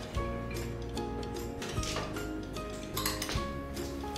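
Background music with a few light clinks of a metal spoon against a small glass bowl as grated cheese and nuts are spooned out.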